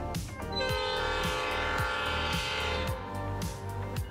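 Background music with a steady beat, over which the horn of an EMD F40PHM-3C diesel locomotive sounds once as one long chord, from about half a second in until near three seconds.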